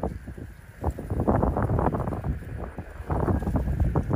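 Gusty wind of about 25 to 30 mph buffeting the microphone: a low rumble that swells and dips with the gusts.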